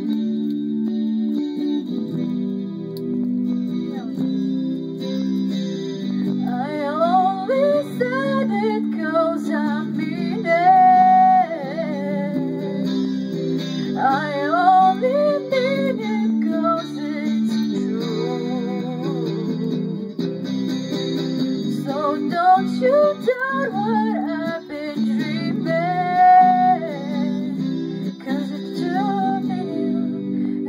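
Slow pop-ballad music led by electric guitar: a steady chord backing, over which a melody line enters a few seconds in, sliding and bending in pitch, drops out for a few seconds past the middle, then returns.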